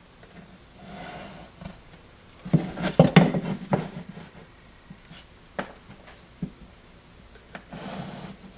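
Pencil scratching on drywall along the edge of a torpedo level held to the wall: a run of quick strokes about two and a half seconds in, then a few single light taps as the level is shifted on the wall.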